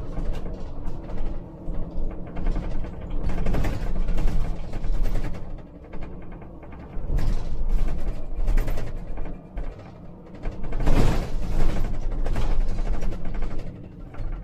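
Inside the cab of a moving Scania Citywide articulated gas (CNG) bus: a steady low rumble from the drivetrain and road, overlaid by clusters of rattles and knocks from the cab that swell and fade in surges.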